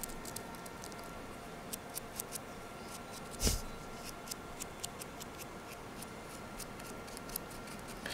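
Quiet handling sounds: faint scattered clicks and taps as a plastic-bottle craft figure is held and painted with a brush, with one louder bump about three and a half seconds in.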